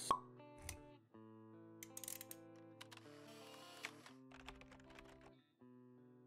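Quiet logo jingle of held notes. It opens with a sharp pop, and soft clicks are scattered through it.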